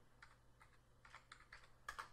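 Faint computer keyboard keystrokes, about six separate taps, the loudest near the end, over a low steady hum.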